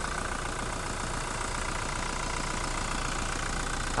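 2019 Toyota Fortuner's four-cylinder turbodiesel idling steadily, heard close up in the open engine bay. It runs smoothly and quietly.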